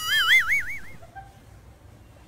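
A short whistle-like tone that slides up, then warbles quickly up and down in pitch for under a second before fading, leaving faint background.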